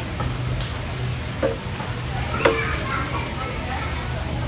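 Outdoor background of distant voices over a steady low rumble, with two short sharp clicks about a second apart in the middle.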